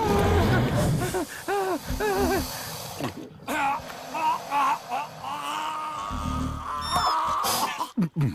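Cartoon film soundtrack: music under a character's short wordless vocal sounds. Low rumbles come about a second in and again near six seconds, and a quick rising run of high chime-like notes comes about seven seconds in.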